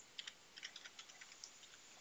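Faint computer keyboard typing: a quick run of keystrokes that stops about three quarters of the way through.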